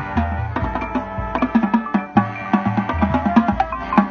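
Marching band music: the front ensemble's mallet percussion plays a busy passage of struck notes over drums and low sustained bass notes that change every second or so.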